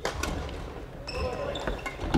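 Badminton play on a wooden sports-hall floor: sharp racket strikes on the shuttlecock, a loud one right at the start and another about a second in, with short sneaker squeaks and feet thudding on the court, echoing in the large hall.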